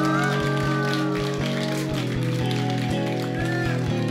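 Live band of keyboards, electric guitar, bass guitar and drums playing, the full band coming in loud right at the start over a steady drum beat.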